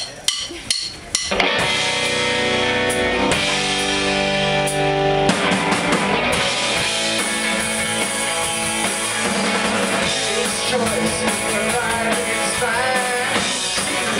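A live rock band starting a song: a few sharp clicks in the first second, then electric guitar chords ringing out, and about five seconds in the drum kit and the rest of the band come in and play on steadily.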